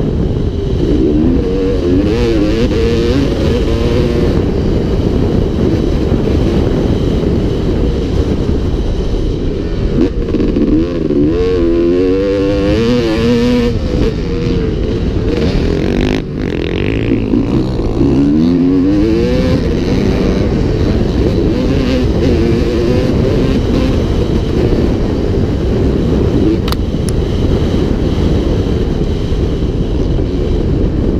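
2002 Honda CR250R's two-stroke single-cylinder engine being ridden hard on a motocross track, its pitch rising and falling over and over as the throttle is worked through the jumps, with a brief drop in level about halfway through.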